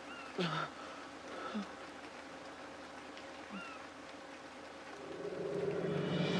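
Faint, steady night-time woodland ambience with an insect-like drone. A few brief high chirps and short low sounds come about half a second in and again after three seconds, and the sound swells up over the last second.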